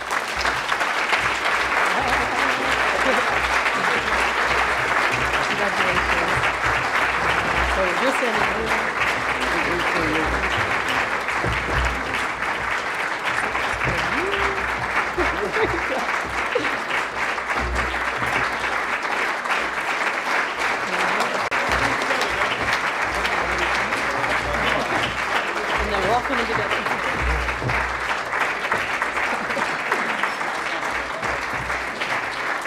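Audience applauding: a dense, even clapping that keeps going without a break.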